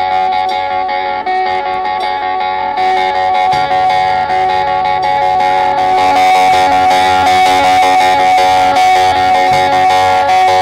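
Live rock band starting a song with a repeated electric-guitar figure. The sound thickens about three seconds in as the rest of the band comes in, and it grows fuller and louder around six seconds in.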